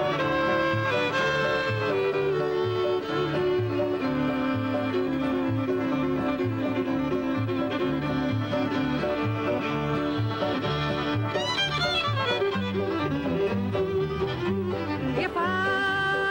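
Bluegrass band playing an instrumental passage: a bowed fiddle carries the melody over upright bass alternating between two notes, with banjo and guitar rhythm. The fiddle plays sliding, wavering notes about three-quarters of the way through.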